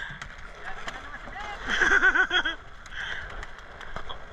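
A man's voice calls out briefly about halfway through, over a steady rush of wind and choppy water around a small open boat.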